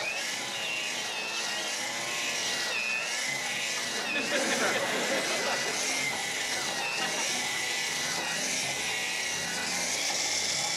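Electric drill running with a bit boring a row of holes through a pine board, its motor whine dipping briefly in pitch several times as the bit bites into the wood.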